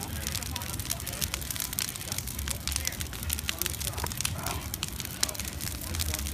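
Large brush-pile bonfire burning, with dense, irregular crackling and popping from the burning sticks over a low, steady rumble.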